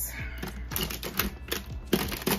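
Small hard-plastic makeup compacts being handled: a quick, irregular run of light clicks and taps, several a second.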